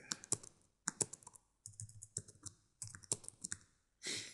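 Computer keyboard being typed on: sharp key clicks in short, irregular runs with brief pauses between.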